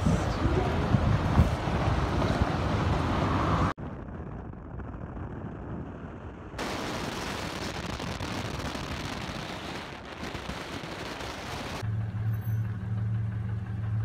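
Vehicle engine and tyre noise as a ute towing a trailer drives by on a dirt forecourt, cut off abruptly after nearly four seconds. Quieter road and wind noise from a moving car follows, then a steady low engine drone near the end.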